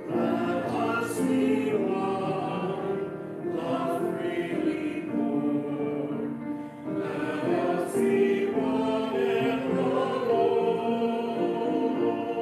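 A small mixed church choir of men and women singing together in sustained phrases, with a brief break between phrases a little before seven seconds in.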